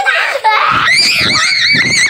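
Children screaming in high-pitched, wavering shrieks, starting about half a second in.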